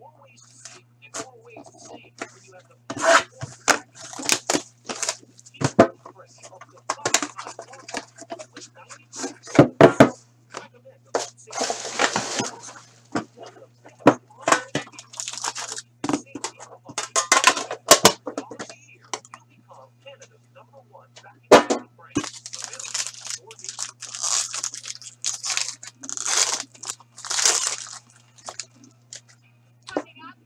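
Plastic shrink wrap being cut and torn off a hockey card hobby box, crinkling, then the cardboard box being opened and its contents handled, with many sharp clicks and rustles in irregular bursts. A steady low electrical hum runs underneath.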